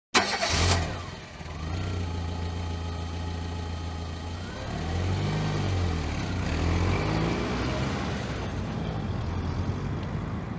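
A car engine starting with a sharp burst, then running with a low, steady hum and revving up and down a few times in the middle.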